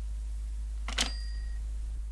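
A single sharp clink about a second in, with a short metallic ring after it, over a steady low hum.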